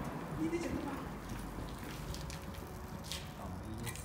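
Faint, muffled voices in an echoing concrete car park, with three short, sharp hissing crackles about two, three and four seconds in.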